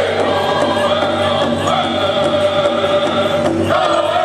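Powwow drum group singing a Grand Entry song in high, loud unison over a steady beat on a large powwow drum, with a short break in the voices near the end.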